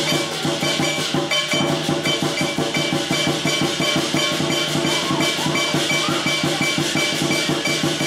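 Lion dance percussion: a drum beaten in a fast, unbroken stream of strokes, with cymbals and a gong ringing steadily over it.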